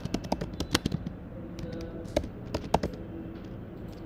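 Typing on a computer keyboard: quick runs of keystrokes through the first second and again from a little before halfway, with a short pause between.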